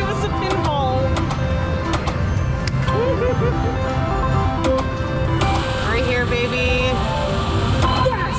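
Casino floor sound: overlapping electronic tones and jingles from slot machines over a steady murmur of voices.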